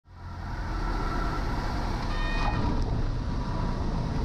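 Cabin noise of a single-engine high-wing light aircraft at low power on its landing rollout: a steady low engine and propeller drone with wind noise that fades in at the start. A brief high-pitched tone sounds about two seconds in.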